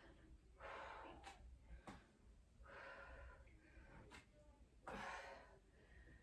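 A woman breathing hard from exercise: three faint breaths about two seconds apart, with a few light taps between them.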